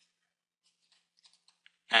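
A few faint, short clicks and taps from a stylus on a pen tablet as handwriting is drawn, in an otherwise near-silent pause. Speech starts again right at the end.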